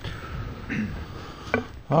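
Two sharp clicks or knocks, one right at the start and another about a second and a half in, with faint handling noise between them.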